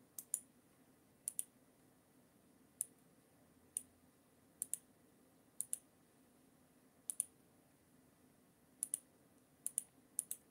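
Computer mouse clicking: faint, sharp clicks, mostly in quick pairs, coming irregularly about once a second.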